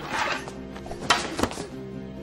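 Wooden practice swords striking each other: two sharp knocks about a second in, over background music with held tones.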